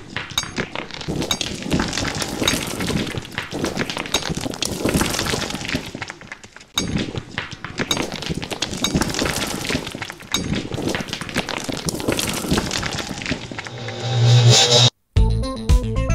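Sound-design soundtrack of dense, crackling shattering effects like breaking glass, coming in waves with many sharp clicks, then a deep low tone swelling near the end before a sudden cut. Just after the cut, electronic keyboard music starts.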